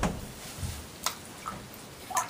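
Bare feet stepping into shallow water in a bathtub: a splash as the foot goes in, then a few smaller splashes and sloshes as the weight shifts.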